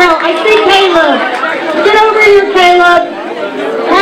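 Speech: a woman talking into a handheld microphone, with crowd chatter behind.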